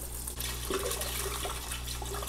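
Isopropyl alcohol pouring in a steady stream from a plastic bottle into the plastic washing container of a Creality UW-01 resin wash station, splashing into the alcohol already in it.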